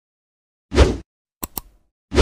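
Sound effects for an animated 'like' button: a short, bass-heavy pop, then about half a second later a sharp double click, like a mouse button being pressed and released.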